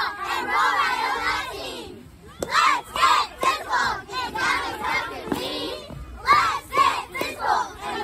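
A squad of young girl cheerleaders shouting a cheer together in short chanted phrases with brief breaks between them.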